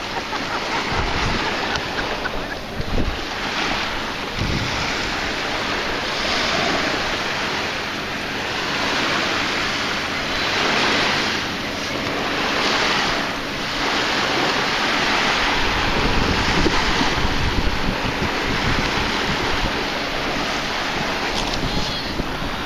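Small surf breaking and washing up on a sandy beach, swelling and easing every few seconds, with wind buffeting the microphone.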